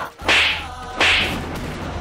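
Two sharp whip-like swish sound effects about a second apart, over a low steady drone of background score: the dramatic whoosh stinger laid on fast camera moves and reaction shots in a TV serial.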